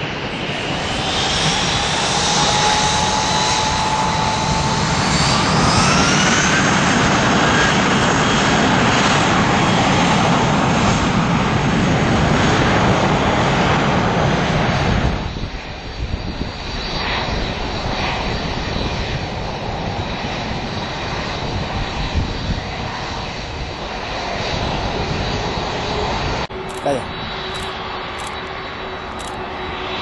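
Jet engines of a Spanair Airbus A320 spooling up to takeoff thrust: a loud roar with whines rising in pitch over the first several seconds. About halfway through, the sound drops suddenly to a quieter, distant jet rumble. Near the end a steady whine from a Delta Boeing 767 taxiing close by takes over.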